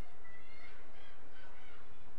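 Distant shouts of players calling across a soccer field, faint and scattered, over a steady low hum.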